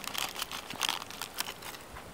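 Quiet, irregular crackling and rustling: a scatter of small clicks with no steady tone underneath.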